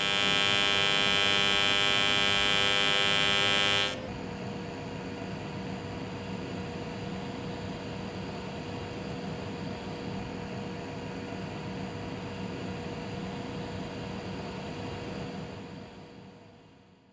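TIG welding arc from a Miller Dynasty 300 pulsing in DC. For about four seconds, on a square waveshape, it gives a loud, steady, high-pitched buzz, the audible noise of pulse welding. It then switches to the QuietPulse triangle waveshape and goes much quieter: a soft hiss with a faint steady tone.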